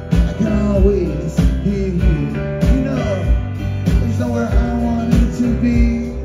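Live rock band playing a mid-tempo song: acoustic guitar and other instruments over drums keeping a steady beat, with a sliding melodic line on top.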